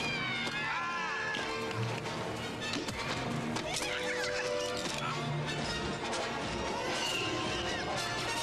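Film soundtrack of a forest battle: music mixed with sound effects and high, wavering creature cries that glide up and down in pitch.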